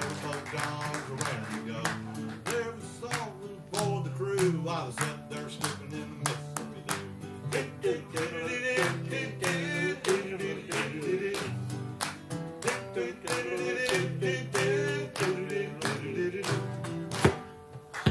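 Instrumental break on a strummed acoustic guitar, about two strokes a second, with a second small stringed instrument picking a melody over it. A last sharp strum near the end, then the music stops.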